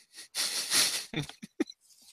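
A man laughing: a breathy, wheezing exhale about half a second in, followed by a few short voiced chuckles.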